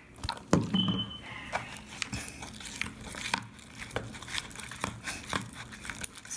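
Metal spoon stirring clear-glue slime in a plastic bowl as contact lens solution activates it and it clumps: irregular sticky clicks and squelches, with a short high squeak about a second in.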